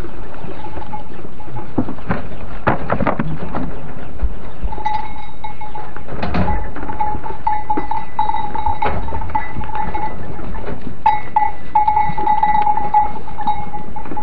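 Goats bleating in a straw-bedded pen, with a few knocks and rustles early on. From about five seconds in, a high, steady note keeps sounding with short breaks.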